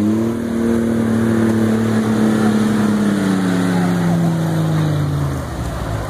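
Off-road jeep's engine revving hard under load in a mud bog. It holds a steady high pitch for about three seconds, then sags slowly and drops away about five seconds in.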